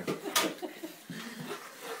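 Soft laughter and murmured voices, with one short breathy burst about a third of a second in.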